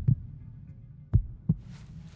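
A low steady hum with a pair of low thumps about a third of a second apart, a little over a second in, after a fainter thump at the very start.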